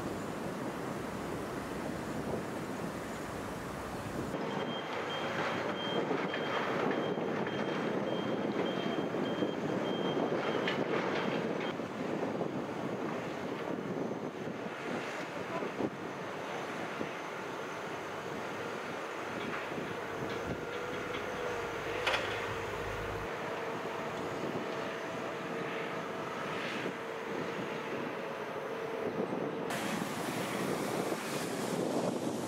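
Construction machinery running at a building site, with a vehicle's reversing alarm beeping repeatedly for several seconds near the start. A single sharp knock about two-thirds of the way through.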